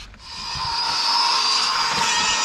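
A steady, loud mechanical whine that swells in within the first second and then holds, with a high tone over a lower one.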